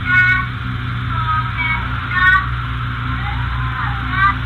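A young child singing in short, high-pitched notes that slide in pitch, over a steady low hum in a muffled home-video recording.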